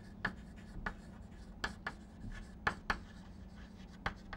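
Chalk writing on a chalkboard: irregular sharp taps and short scratchy strokes as letters are written, several of them clearly louder than the rest.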